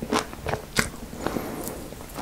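Close-miked chewing of a chocolate-coated Magnum Mini ice cream bar, with several sharp crunches of the cracking chocolate shell.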